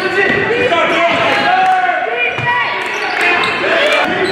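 A basketball dribbled on a hardwood gym floor during a game, with short high squeaks and voices of players and spectators, echoing in a large hall.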